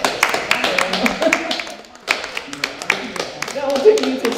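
Small group of people clapping by hand, an irregular scatter of claps with voices talking over it; the clapping thins out briefly about halfway through.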